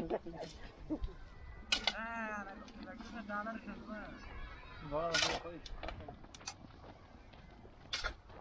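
A shovel scraping into dry, loose soil and tipping it into a metal wheelbarrow, a few short scraping strokes, the clearest about two and five seconds in.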